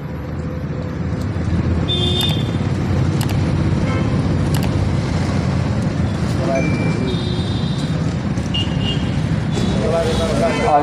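Steady low outdoor rumble, like road traffic, with indistinct voices of a gathered crowd and a few brief high tones scattered through it.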